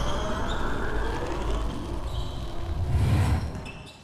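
Intro logo-sting sound effects: a dense, whooshing rumble with faint high ringing tones. A low swell comes about three seconds in, and the sound fades out near the end.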